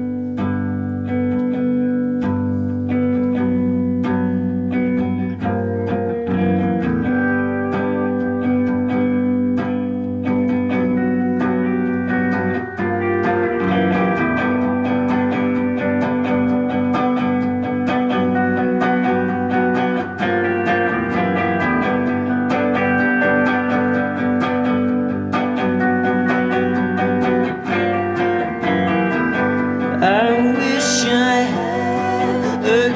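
Live band playing an instrumental passage: electric guitar notes over held keyboard chords, with no vocals.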